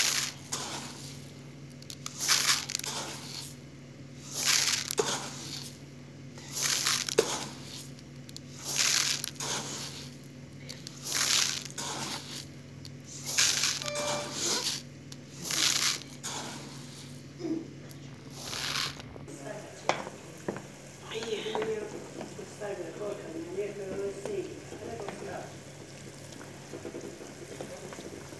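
Dry uncooked rice grains poured into a plastic bowl scoop by scoop, a short hiss of grains about every two seconds, some nine times. After that only faint background sounds remain.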